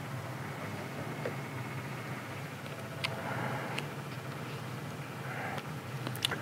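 A3 thermal laminator running in hot mode: a steady low motor hum from its turning rollers, with two faint clicks around the middle.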